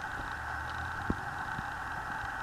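Steady background hiss and low hum, with one short click about a second in as a hard plastic jack-o-lantern piece is handled.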